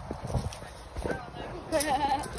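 Footsteps on a gravel path, a few irregular thumps as the walker moves quickly, with short voice sounds near the end.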